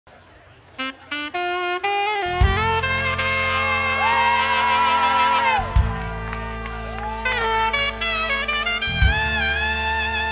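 Alto saxophone opens with a few short notes climbing in pitch. About two and a half seconds in, a live band with bass and drums comes in under it, and the saxophone holds long notes that bend in pitch. The band lands heavy accents again near six and nine seconds.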